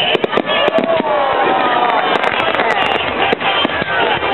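Aerial fireworks bursting: a rapid run of sharp bangs and crackles in the first second, then more scattered bangs and pops.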